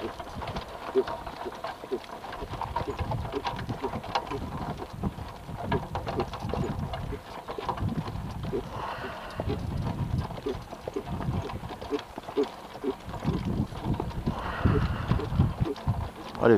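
Hooves of a horse pulling a cart clip-clopping on a dirt track, with irregular knocks from the cart and harness.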